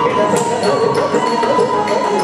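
Carnatic dance accompaniment: a singing voice carrying a wavering, ornamented melody over percussion. Short strikes from the dancer's bare feet stamping on the stage, with ankle bells, fall in among it.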